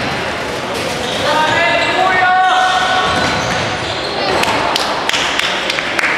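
Echoing sports-hall din of an indoor football game: a voice shouts for a couple of seconds about a second in, over steady crowd and player noise. Toward the end come several sharp knocks of the ball being kicked and bouncing on the hard hall floor.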